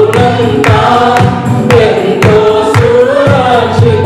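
Small mixed choir of women and men singing a Telugu Christian worship song together over a steady beat about twice a second and a held low bass note.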